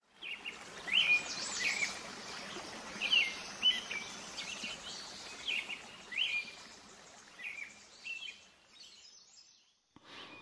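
Birds singing outdoors: a series of short, sweeping chirps repeating every second or so over a steady hiss of open-air ambience, fading out near the end.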